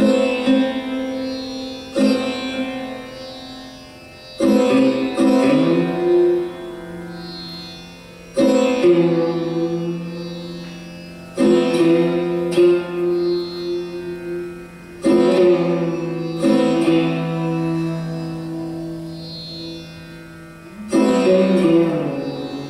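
Sarod played solo in a slow, unmetred passage without tabla: about ten widely spaced plucked strokes, each note ringing and fading over a few seconds, with slides between pitches.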